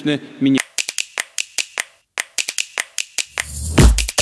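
A man's voice ends about half a second in, followed by a quick, irregular run of sharp clicks. Electronic music with a deep, heavy beat comes in near the end.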